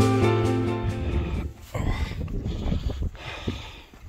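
Background music fading out over the first second, followed by uneven gusts of wind buffeting the microphone.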